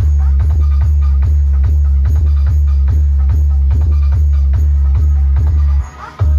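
Electronic dance music played very loud through a DJ sound system's speaker boxes, dominated by a heavy continuous bass with a steady beat; the music drops out briefly near the end.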